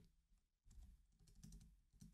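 Faint computer keyboard typing, a handful of quick irregular keystrokes, as numbers are entered into a settings field.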